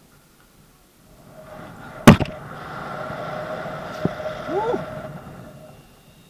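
A sharp knock about two seconds in, then a swelling rush of air with a steady whistle over a helmet camera's microphone as a rope jumper falls from a 50 m chimney, and a short rising whoop near the end.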